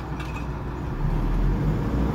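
Car engine and road noise heard from inside the cabin as the car drives along, a steady low rumble that grows a little louder about halfway through.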